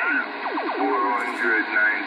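Speech received over a two-way radio, a voice talking through the set's speaker, thin and cut off below about 200 Hz and above about 5 kHz.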